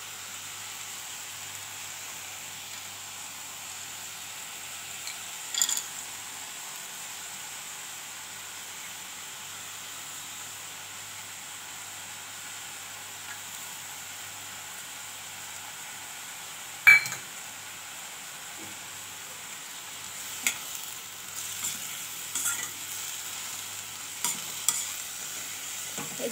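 Mustard greens frying in a steel kadhai, a steady soft sizzle. A sharp metal clink stands out about 17 seconds in. From about 20 seconds the steel spatula scrapes and clinks against the pan as the greens are stirred.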